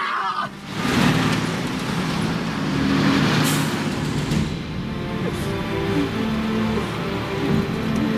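Military cargo truck engines and tyres running steadily as a convoy drives along a road, under background music with sustained notes.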